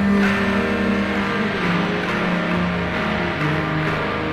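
Lo-fi alternative rock demo, instrumental: distorted electric guitars holding long notes that change pitch every second or so.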